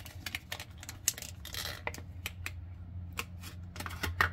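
Quick, irregular clicks and taps of a plastic earphone case and in-ear earpieces being handled as an earpiece is taken out of the case, over a steady low hum.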